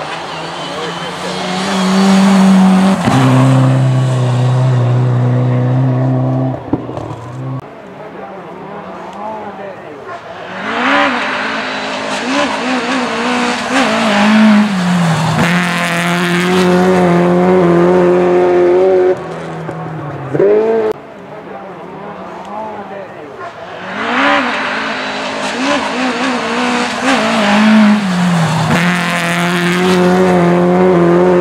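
Rally cars driven hard on a snowy stage, their engines revving high with the pitch climbing and then dropping sharply again and again as they shift and lift off, in three loud stretches with quieter gaps between.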